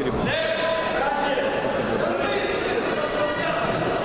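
A judoka thrown down onto the tatami with a thud just after the start, followed by loud, drawn-out shouting from voices around the mat over the constant chatter of spectators.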